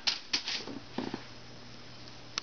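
A few light clicks and rustles of handling in the first second or so, then only a faint steady low hum.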